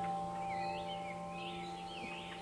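Soft background music: a chime-like note struck just before keeps ringing and slowly fades, with small bird chirps over it in the middle.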